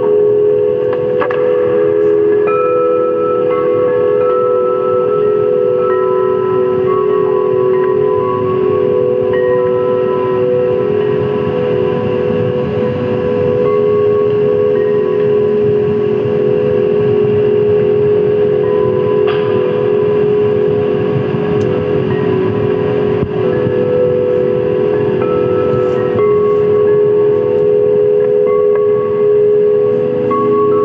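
Live experimental electronic drone music: loud sustained low tones held steady over a rough, hissing noise bed, with higher tones fading in and out every few seconds.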